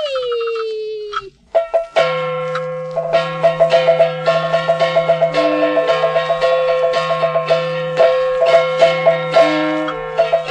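Beiguan (luantan) traditional Taiwanese opera music. A held reed note slides and fades, with a short break about a second in. From about two seconds in, the ensemble plays a steady high wind melody over quick metallic percussion strikes and a low sustained tone.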